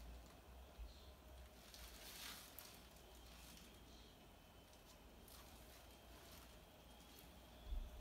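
Near silence: room tone with a steady low rumble and a few faint, soft rustles.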